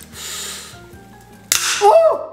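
A lemon being squeezed in a red hand-held lever citrus squeezer over a blender jar, with a short hiss of juice early on. About a second and a half in comes a sudden loud burst of sound while the squeezer is being forced down hard.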